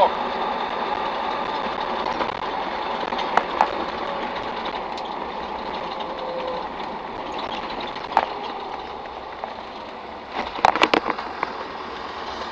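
Cab noise of a Land Rover Defender 90 TD5 on the move: the five-cylinder turbodiesel and road roar, getting quieter in the second half as the vehicle slows for a junction. A few sharp clicks, and a short cluster of knocks near the end.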